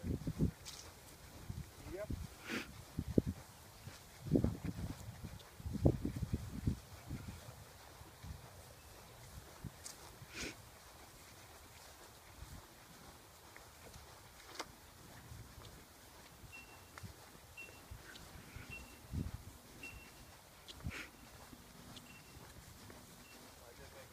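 Faint, indistinct voices outdoors, loudest in bursts during the first seven seconds and then dropping away, with a few short clicks.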